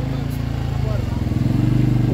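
Small motorcycle or scooter engine running steadily at low speed as the bike creeps forward.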